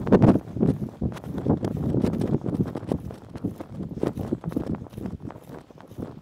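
Garden rake scraping and dragging through mowed grass stubble and loose dirt in repeated strokes, a scratchy rustle with clicks of the tines, about two strokes a second, thinning out toward the end. The ground is being raked bare for seeding.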